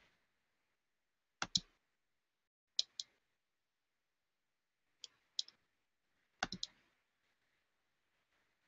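Computer mouse clicking: four short groups of two or three sharp clicks, spaced a second or more apart.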